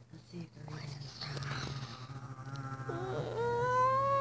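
A long, high-pitched drawn-out call that starts about three seconds in and is held for over two seconds, rising slightly and then falling.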